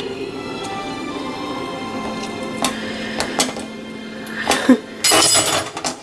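Music playing in the background with held notes, over a few sharp clinks of a steel knife against a stainless-steel sink, then a louder clatter near the end.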